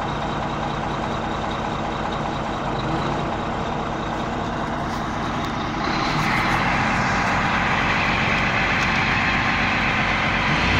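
Caterpillar D8R crawler dozer's diesel engine idling with a steady low hum. The sound gets louder and brighter, with more high whir, about six seconds in.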